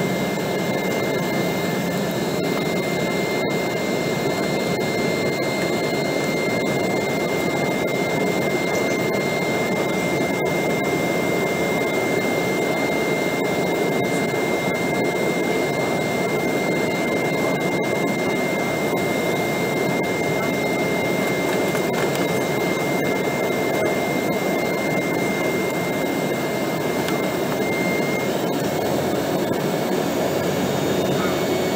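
Steady cabin noise of an Embraer ERJ 195 airliner in its climb after takeoff: the sound of its turbofan engines and the airflow, heard inside the cabin, with a thin steady whine above it.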